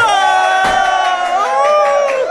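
A group of people cheering with long, held whoops, joined by a sharp pop from a confetti cannon about two thirds of a second in.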